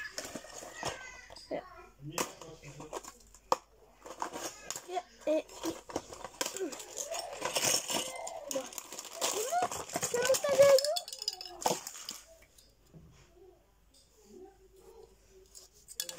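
A child handling a small cardboard toy box, with taps, knocks and rustles, mixed with short bits of a child's voice. It goes quieter near the end.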